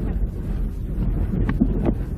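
Radio-play thunderstorm sound effect: a steady, fairly loud low rumble of wind, with a few faint brief sounds in the second half.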